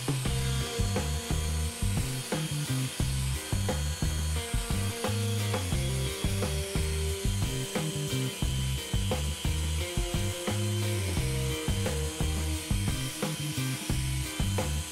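Makita random orbital sander running on a pine board, a steady hiss under background music with a stepping bass line and a regular beat.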